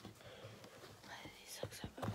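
Faint whispering or murmuring under the breath, with two soft knocks in the second half.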